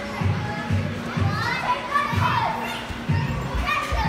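Young children's voices and squeals, rising and falling, over background music with a steady beat of about two pulses a second.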